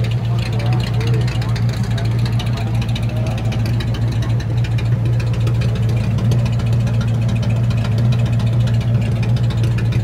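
Traditional roadster hot rod's engine idling steadily at close range, a constant low exhaust note with no revving.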